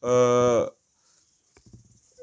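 A man's drawn-out hesitation filler, a flat, steady 'ehh' held for about three quarters of a second, then silence with a few faint clicks near the end.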